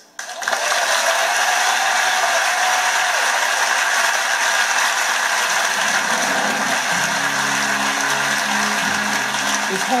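Audience applauding, heard through a television's speaker. Low music comes in under the applause about six seconds in.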